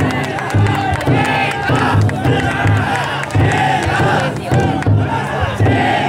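Big drum inside a chousa taikodai festival float beaten at a steady beat, with a crowd of bearers shouting a chant together over it.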